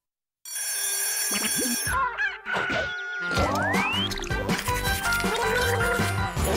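Silence for about half a second, then a bright children's TV jingle with cartoon sound effects layered over it, including a sound that slides up in pitch about three and a half seconds in.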